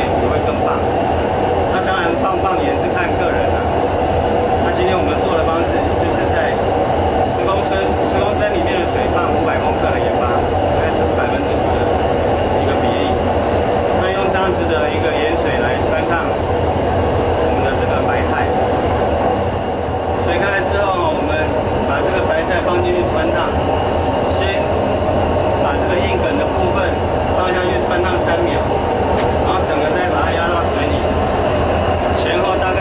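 Steady, loud rumble of a commercial kitchen stove with a large wok of water at a rolling boil on it, and a man talking over the noise.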